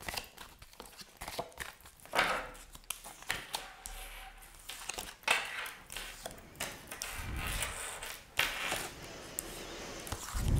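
Tarot cards being shuffled and laid on a table: a series of soft, short rustles and light taps of card stock.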